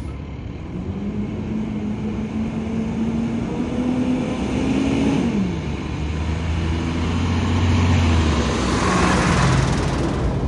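Street traffic: a motor vehicle's engine running nearby, its pitch dropping about five seconds in, then the rising engine and tyre noise of a vehicle passing close near the end.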